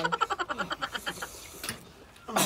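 A person's throaty, rattling vocal sound, a quick train of pulses about a dozen a second, trailing off within the first second; a short click follows near the end.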